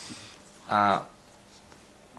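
A pause in a man's speech: one short voiced syllable, like a hesitation sound, just before the middle, otherwise only faint room tone.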